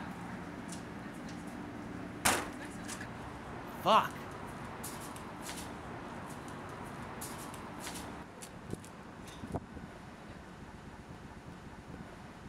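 A single sharp knock about two seconds in, then a man's exclamation. Underneath runs a steady low hum that drops away about eight seconds in, followed by a couple of faint clicks.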